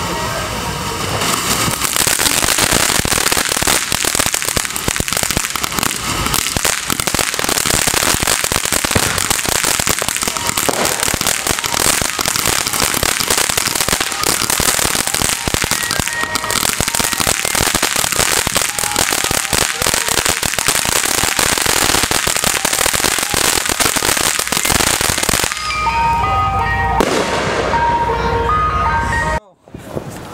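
A ground fountain firework spraying sparks: a loud, steady hiss packed with rapid crackles, which stops about 25 seconds in.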